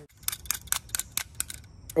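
Utility knife's blade slider being clicked out notch by notch: a quick run of sharp, crisp clicks, about seven or eight a second.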